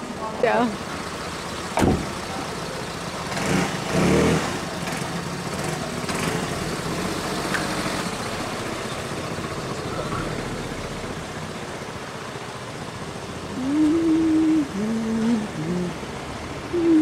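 Street traffic with a delivery van's engine running close by. The noise swells about three to four seconds in, and there is a single sharp knock about two seconds in.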